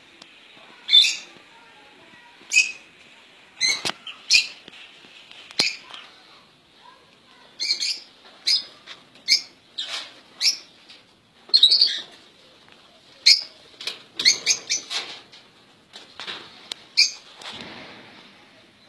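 Small caged finches giving short, sharp chirping calls at irregular intervals, with a few wing flutters mixed in.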